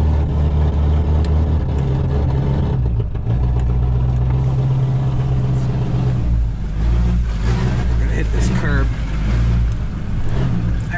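A 2016 Duramax 6.6-litre V8 turbodiesel running steadily under light throttle as the pickup creeps forward, heard from inside the cab. Its turbo is destroyed and the exhaust is not connected to it, so the engine makes no boost and has no power.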